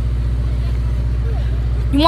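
A motor vehicle engine idling close by: a steady low rumble with a fast, even pulse.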